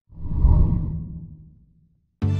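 Whoosh transition sound effect that swells in quickly and fades away over about a second and a half.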